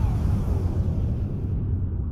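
Logo-intro sound effect of a fiery blast: a deep rumble dying away, with a descending whistle in the first half second and the higher sizzle fading out after about a second and a half.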